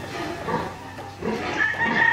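Pigs in their pens grunting, with a held high-pitched squeal near the end.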